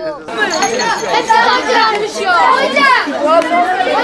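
A group of children chattering and calling out over one another, many voices at once.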